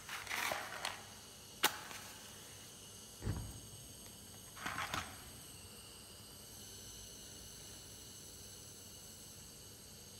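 A Bunsen burner being lit: handling noise and a sharp click in the first two seconds, a dull thump, then a short whoosh about five seconds in as the gas catches, followed by a faint steady hiss while its yellow flame burns.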